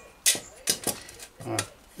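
Steel armour plates clinking lightly against each other as a rough-formed cuisse is handled against its knee plate: a few short metallic clicks in the first second.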